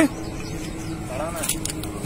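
A man's faint, distant voice speaking briefly a little over a second in, over a steady low hum in the outdoor background.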